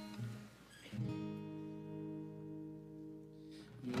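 Acoustic guitar playing soft chords as the introduction to a congregational hymn, with a new chord struck about a second in and left ringing.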